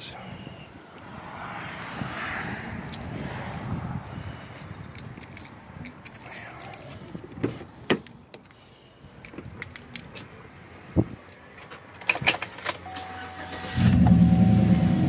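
Handling noises and scattered clicks from the truck's door and keys, then a steady chime. Near the end the 2009 GMC Sierra's engine starts and settles into a low idle rumble through its upgraded exhaust.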